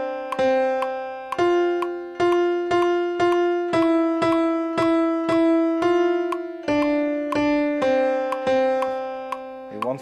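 Piano sound from a keyboard app on an iPad playing a slow, even melody of fan-song notes, about two a second, each note struck and fading, often two notes at once.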